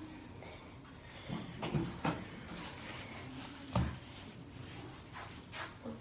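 Quiet room tone broken by a few short knocks and thumps, the loudest near four seconds in.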